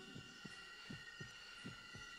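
A slow heartbeat, three low double thumps (lub-dub) in two seconds, laid under a steady high thin whine.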